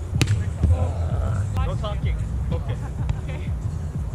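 Beach volleyball struck hard at the net with a sharp slap just after the start, then a couple of fainter ball contacts and brief shouts from the players, over a steady low rumble of wind on the microphone.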